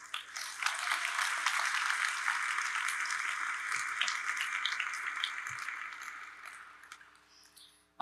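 Audience applauding, swelling quickly, holding, then dying away over the last couple of seconds.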